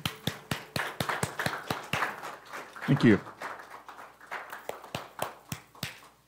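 A small audience applauding at the end of a song. Individual claps can be heard, and the clapping thins out and stops near the end.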